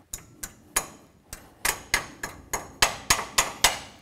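About a dozen sharp metallic clicks and taps as a steel cotter pin is worked through a tie rod end's castle nut and its legs are bent over. The clicks come irregularly and closer together from about halfway in.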